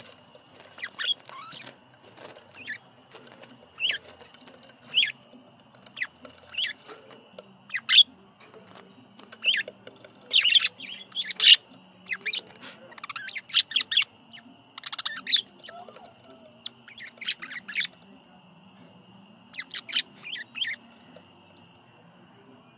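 Budgerigars chirping: short, sharp calls scattered through, running together into busier chatter in the middle.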